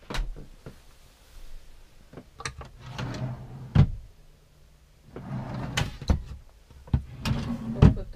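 A motorhome's wooden under-bed drawer worked by hand: catch clicks, a rumbling slide on its runners, and a loud knock about four seconds in as it comes fully open. It slides back with more rumbling and shuts with another loud knock near the end.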